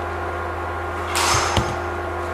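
A brief rustling whoosh and a knock about a second and a half in, over a steady low hum.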